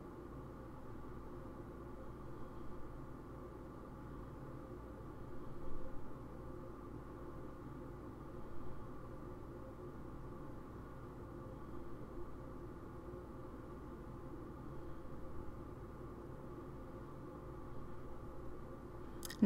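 Quiet, steady background hum and hiss of room tone, with a few faint, brief soft sounds now and then.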